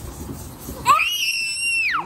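A child's high-pitched scream, starting about a second in: it jumps up sharply, holds one shrill pitch for about a second, then drops away.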